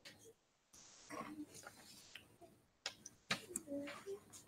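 Faint, indistinct voices with a few light clicks, the clicks coming as a plastic ruler is shifted across a paper worksheet.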